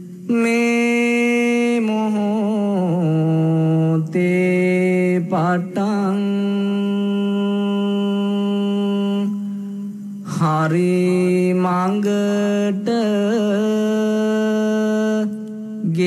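A single voice chanting a Buddhist devotional chant: long held notes with slow, wavering glides between pitches, broken by short pauses for breath, once near the middle and once near the end.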